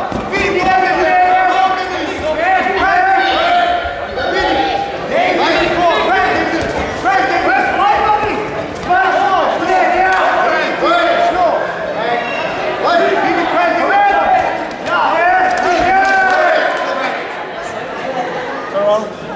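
Shouting from people at ringside: one raised voice after another yelling short, high-pitched calls with hardly a break.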